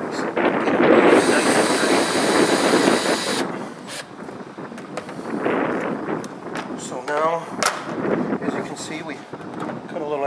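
Cordless drill driver driving a screw into the garage door frame: the motor runs with a high whine for about three seconds and stops suddenly, followed by quieter handling clicks.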